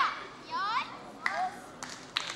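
Children's voices: short high-pitched shouts, the loudest right at the start, then two shorter ones about half a second and a second and a quarter in.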